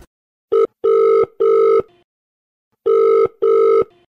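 Telephone ringing tone sounding as two double rings. Each ring is two short pulses of a steady pitched tone, and the pairs come about two seconds apart.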